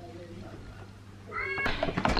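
A cat meowing once, briefly, about a second and a half in.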